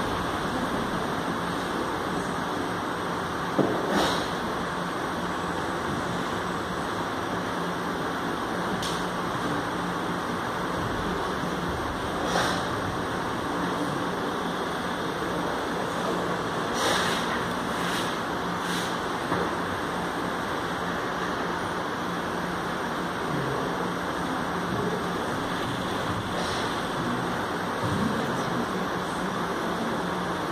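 Steady rushing noise, with about half a dozen brief, sharp thumps scattered through it from bare feet striking a hard floor as a dancer moves.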